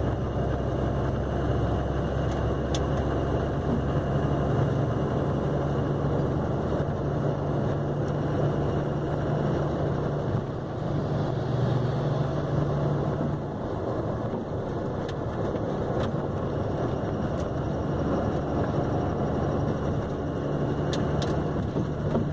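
Steady engine drone and road noise heard from inside the cab of a vehicle cruising on a highway.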